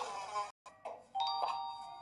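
Cartoon soundtrack heard through a TV speaker: a short voice sound at the start, then, after a cut, a bell-like chime of several steady held tones from just over a second in.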